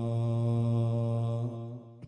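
A man's voice chanting, holding one long steady note that trails off about one and a half seconds in, in the manner of an Islamic devotional chant.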